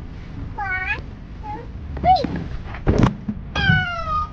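A young child's high-pitched wordless cries: a few short calls that swoop up and down in pitch, the last one falling, with a single sharp knock about three seconds in.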